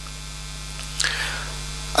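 Steady low electrical mains hum, with a short soft hiss about a second in.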